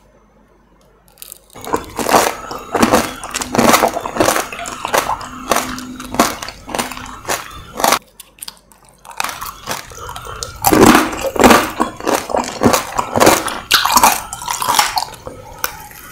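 Close-miked crunching and chewing of candied strawberry tanghulu: the hard sugar shell cracks between the teeth amid wet chewing. It starts about a second and a half in, pauses briefly around eight seconds, then resumes, loudest a little after the ten-second mark.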